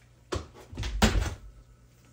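A door opening and closing: a sharp knock, then a heavier thud about a second in.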